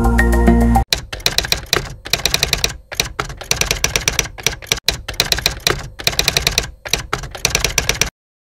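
Background music cuts off abruptly just under a second in, then a typewriter sound effect clatters in runs of rapid keystrokes broken by short pauses, as on-screen text is typed out letter by letter.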